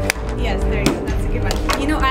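A few sharp knocks of a toilet plunger striking a wooden block as it is used to hammer in a nail, the first and loudest just after the start, over background music.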